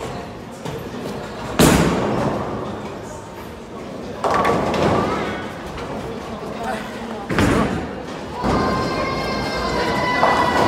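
Bowling pins crashing as balls hit them, twice: a loud crash about one and a half seconds in and another about seven seconds in, each ringing on in a large hall. Voices and background music run underneath.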